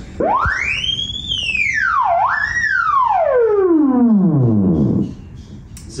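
Theremin playing one continuous gliding tone: it sweeps up steeply to a high whistle, dips, jumps back up, then slides slowly down to a low pitch and stops near the end.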